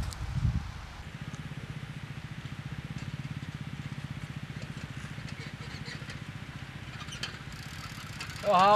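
An engine running steadily at low speed with a rapid, even chugging pulse, starting about a second in, after a few dull low thumps.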